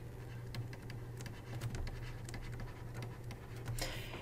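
Faint tapping and scratching of a stylus on a tablet screen as a few words are handwritten, over a low steady hum.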